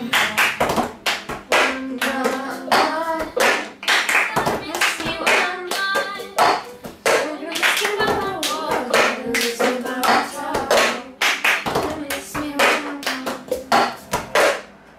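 Hand claps and cups being tapped and struck down on a wooden table in the rhythm of the cup game, a fast, steady run of strokes with singing over them.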